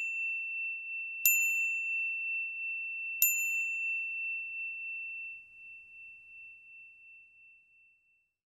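A small high-pitched bell, struck twice, about a second in and again about three seconds in. Each strike is a clear single ring that lingers and slowly fades away over the last few seconds.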